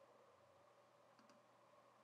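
Near silence: room tone, with a faint computer mouse click a little over a second in.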